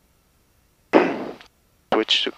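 Headset intercom and radio audio that sits at silence between transmissions, broken by one short burst of hiss about a second in that fades within half a second, and a click near the end.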